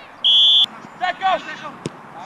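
Referee's whistle: one short, steady, shrill blast of about half a second, signalling a foul. Players' shouts follow, and there is a sharp knock near the end.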